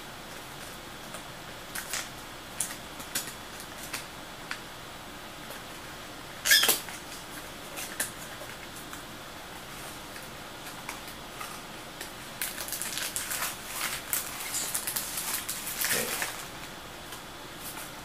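Hands handling and opening a small cardboard accessory box: scattered light clicks and scrapes, a sharper knock about six and a half seconds in, then a stretch of dense rustling of packaging near the end.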